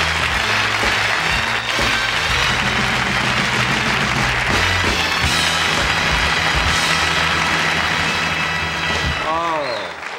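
Studio big band playing a guest off, with a walking bass line, over loud audience applause; both fade out near the end as a man starts talking.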